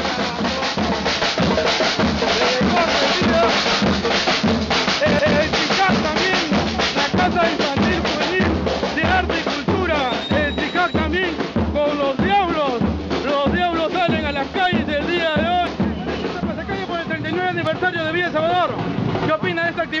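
A marching percussion group playing snare drums in a fast, steady beat. Voices grow louder over the drumming in the second half.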